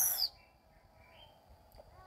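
A woman's voice trails off in the first moment, then a pause of near silence with only faint, thin steady tones in the background.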